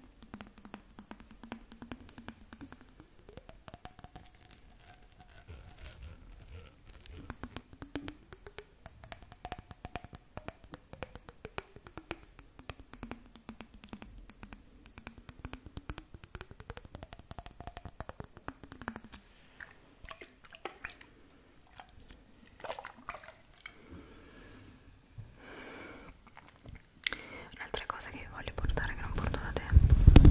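Long fingernails tapping quickly on a glitter-filled jar held close to the microphone, a dense run of light clicks that thins out after about twenty seconds. Near the end, hands rub the fluffy microphone windscreen, a louder low rustling.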